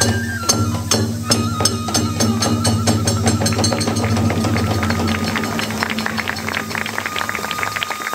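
Hiroshima kagura accompaniment: a bamboo flute holding long notes over steady strokes of drum and small hand cymbals, the strokes coming faster in the second half.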